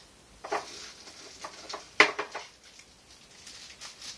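Small paper seed packets being handled and unfolded: scattered rustling and light knocks, with one sharp click about two seconds in.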